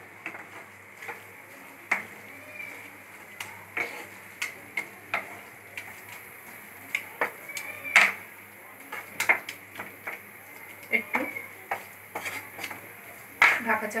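Wooden spatula stirring a dry soya-chunk mash in a nonstick kadai, scraping and knocking against the pan in irregular taps about once a second, the loudest about eight seconds in.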